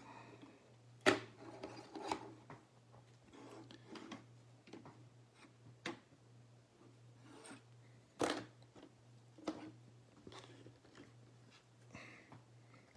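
Plastic LEGO brick stands set down on a tabletop one after another: several sharp clicks and knocks, the loudest about a second in and just after eight seconds, with soft rubbing and rustling between them.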